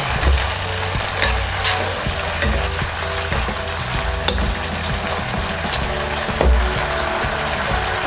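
Chicken, Thai holy basil and chillies stir-frying in a hot nonstick wok: a steady sizzle, with the spatula clicking and scraping against the pan a few times, loudest about four seconds in.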